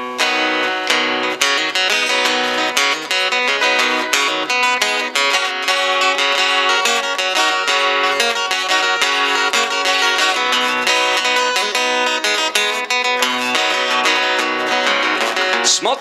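A solo acoustic guitar comes in suddenly, picked and strummed in a quick, steady rhythm: the instrumental introduction of a song before the vocal begins.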